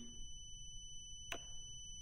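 Near-quiet room tone with a faint steady high-pitched whine, broken once a little past halfway by a short click: the handlebar switch's down button pressed to confirm the service-light reset on a Suzuki GSX-R1000R dash.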